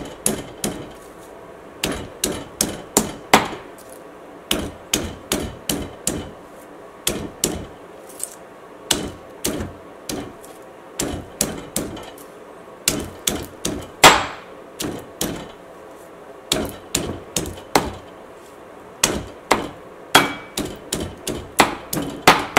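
Stone pestle pounding garlic and green chillies in a black stone mortar: sharp knocks in short bursts of a few strokes, with brief pauses between bursts and one harder strike about two-thirds of the way through.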